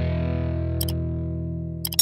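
Intro music: a sustained, distorted electric guitar chord slowly fading out. Sharp mouse-click sound effects come about a second in and again near the end as an animated subscribe button is clicked.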